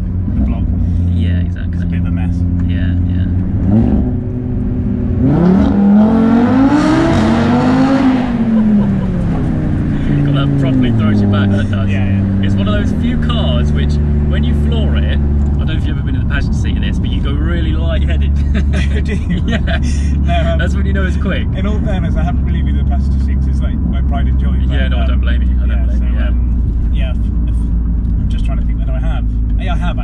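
The turbocharged five-cylinder engine of a Stage 3 Audi RS3 saloon, heard from inside the cabin. It runs steadily at first, its revs climb from about four seconds in to a peak near eight seconds, then fall away, and it settles into a steady low drone while cruising.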